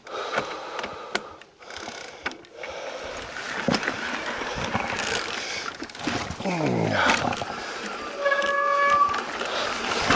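Mountain bike riding down a steep dirt and rock trail: rough tyre and trail noise with wind on the camera microphone, building after the first few seconds. A short falling vocal groan from the rider comes past the middle, and near the end a steady squeal lasts about a second.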